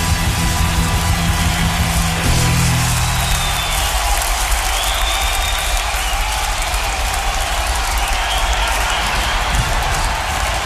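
A live blues-rock band with electric guitar rings out its final chord for about four seconds, then the audience cheers and applauds.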